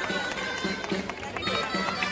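Folk street music: high, reedy wind instruments play a held melody over a steady drumbeat of about three beats a second.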